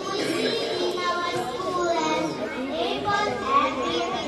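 Children's chatter: many young voices talking and calling out over each other.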